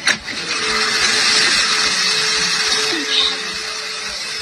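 A door's lever handle clicks, and about half a second later a loud, steady rushing noise starts, with a faint steady low hum beneath it.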